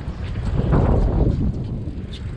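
Wind buffeting the microphone at sea: a rough low rumble that swells about a second in.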